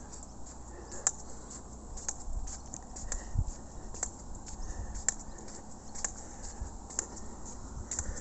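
Footsteps on pavement, about one a second, with low wind rumble on the microphone and faint high ticks.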